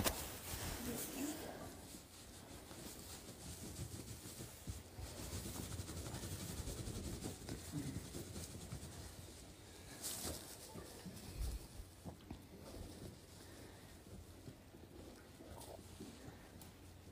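Faint rustling of straw and cloth as a newborn foal is handled and rubbed down with towels, with a sharp knock about ten seconds in and a low thump a moment later.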